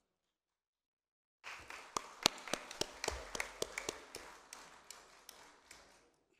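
A small audience clapping, starting about a second and a half in with many separate sharp claps, then thinning out and fading away.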